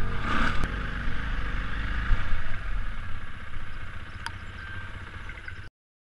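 Dirt bike's four-stroke single-cylinder engine running steadily, heard from a helmet camera, with two brief clicks. The sound fades slowly and cuts off shortly before the end.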